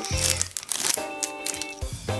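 Background music with steady held notes, and a clear plastic bag crinkling as it is handled in the first half second.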